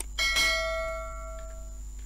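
Notification-bell chime sound effect from a subscribe-button animation: two quick strikes, then a bell tone that rings and fades over about a second and a half, over a steady electrical hum.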